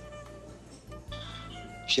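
Soft background music under a pause in the dialogue: quiet sustained notes, with a low held tone coming in about halfway through.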